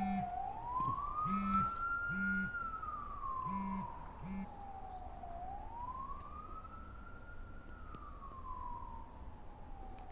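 Wailing siren sound effect rising and falling slowly in pitch, two full sweeps, each a quicker rise and a longer fall. Pairs of short low buzzing tones sound over it during the first half.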